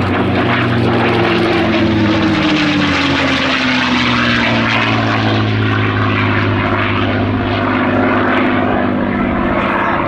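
P-51D Mustang's Packard Merlin V12 engine and propeller running at display power as the fighter makes a pass. The pitch drops over a few seconds as it goes by and away, then holds steady.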